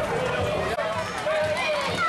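Hooves of Camargue horses and a bull running on a paved street, a quick run of low thuds, under a crowd's voices and shouts.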